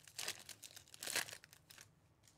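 Foil wrapper of a 2020 Bowman Chrome hobby pack being torn open by hand, a run of crinkling and crackling tears that is loudest about a second in.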